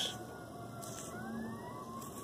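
Faint siren wailing, its pitch sliding slowly down and then rising again about halfway through.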